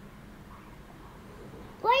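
Quiet room tone, then near the end a toddler girl's high-pitched, drawn-out sing-song voice starts up, asking "What are…".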